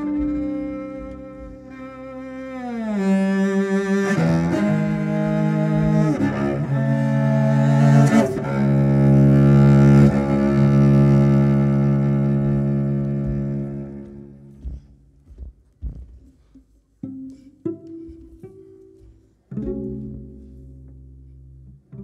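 Solo cello bowed in a free improvisation: long low notes, with a downward slide in pitch about two to three seconds in, held until they fade out around fourteen seconds. Then a few short, scattered sounds, and a new bowed note begins about twenty seconds in.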